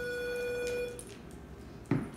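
E-collar remote's beep: a steady electronic tone, already sounding as it begins, that stops about a second in, marking the stimulation button being held to correct the dog. A short knock near the end.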